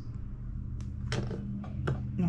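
Steady low hum of room noise, with three light clicks from handling a small fishing hook, line and spool on a table.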